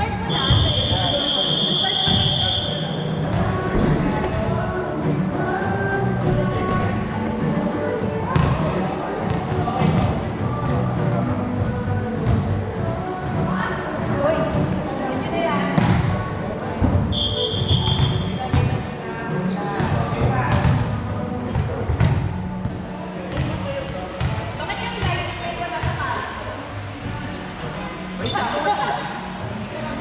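Indoor volleyball play: the ball is struck and hits the hard court again and again, each impact echoing in the large hall. A steady high whistle blast sounds near the start and a shorter one about 17 seconds in, typical of a referee signalling serves and the end of a rally.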